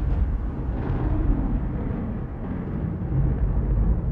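A deep, continuous low rumble, with no voice over it.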